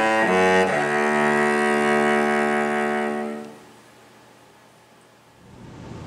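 Cello played with the bow: a few quick notes, then one long held note that fades out about three and a half seconds in, leaving faint room noise.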